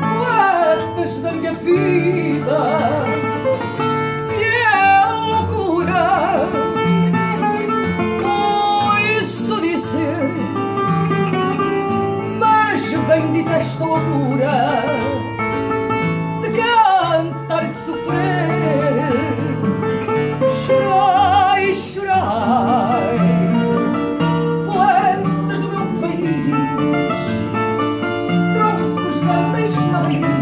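A woman singing fado with a heavy vibrato, accompanied by a Portuguese guitar playing a bright plucked melody over a classical guitar (viola) strumming chords and a steady bass line.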